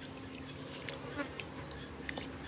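Hands squelching and groping through wet mud in a shallow puddle, with short wet clicks and crackles scattered through. A steady low buzzing hum runs underneath.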